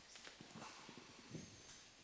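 Near silence: room tone with a few faint, soft knocks and shuffles.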